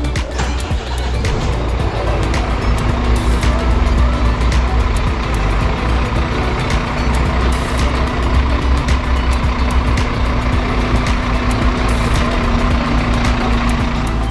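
Scania fire engine's diesel engine running as the truck moves out of the station bay, with music playing over it; a steady hum joins in about two seconds in.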